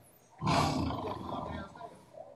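A person's voice: one loud, breathy exclamation that starts about half a second in and lasts about a second.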